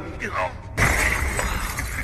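Action-film fight sound: a man's voice says a short line, then about 0.8 s in a sudden loud crash of shattering, breaking debris as a fighter is thrown to the floor, over a low rumble.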